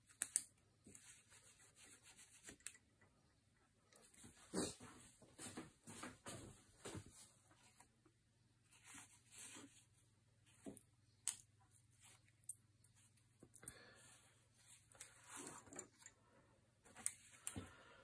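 Scissors cutting through oil-soaked cloth wrapping on a wooden gun stock, and the cloth being pulled away: faint, irregular rustles and snips with a few sharper clicks.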